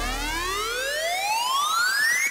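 A synth riser in a dirty south rap instrumental: one tone with its overtones gliding steadily upward in pitch, heard alone with the drums and bass dropped out, as a build-up transition.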